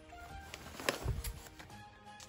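Quiet instrumental background music, with a brief knock and rustle about a second in as a wrapped present is handled.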